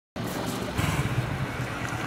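A car engine running at low speed with outdoor traffic noise, starting suddenly just after the start, as a police patrol car drives slowly along the street.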